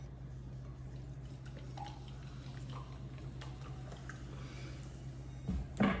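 Sprite poured from a plastic bottle into a glass, the soda fizzing faintly, over a steady low hum.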